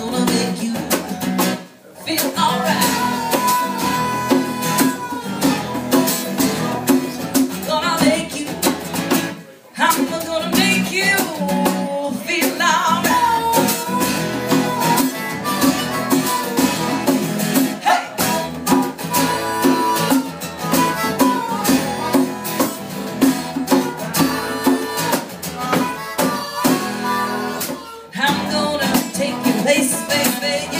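Live acoustic band instrumental break: a harmonica solo wailing over strummed acoustic guitar and a hand drum (djembe). The music breaks off briefly twice, about two and nine and a half seconds in.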